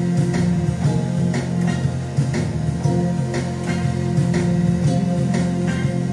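Live electronic keyboard music from a three-manual MIDI keyboard rig with a drum machine in sync: sustained low bass notes under keyboard parts, with a regular drum beat.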